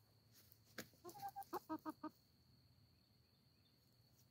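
Chicken clucking: a quick run of about eight short clucks starting about a second in and lasting about a second, just after a single sharp tick.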